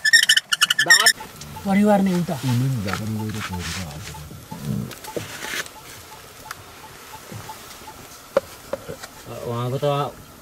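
A water buffalo's low, drawn-out call, bending in pitch, from about a second and a half in to about five seconds, after a quick high squeaky chirping in the first second; a few light knocks follow near the end.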